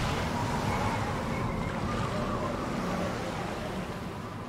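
Ocean surf sound effect: a steady rushing of waves and wind behind the title card, easing slightly near the end.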